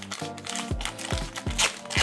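Foil wrapper of a Pokémon TCG booster pack crinkling as it is torn open and peeled apart, loudest near the end, over background music with a steady beat.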